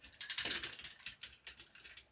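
Hard plastic parts of a Transformers Devastator figure clicking and rattling as they are handled: a quick run of small clicks in the first second, then a few fainter ones.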